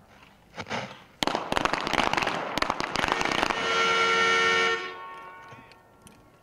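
A rapid volley of pistol shots from several shooters firing at once, packed together over about two seconds starting a second in. It is followed by a steady horn-like tone of about a second that fades away.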